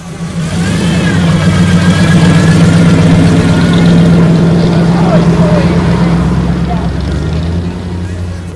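A car engine running close by with a deep, steady low note that swells and then eases off near the end, with voices over it.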